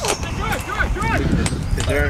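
Distant shouts and calls of players on the pitch, several short rising-and-falling cries, over a steady low rumble.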